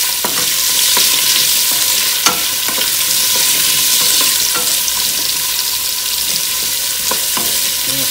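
Diced carrots, onion and celery sizzling in oil in a stainless steel stockpot, stirred with a wooden spoon that scrapes and knocks against the pot. One knock a little over two seconds in is sharper than the rest.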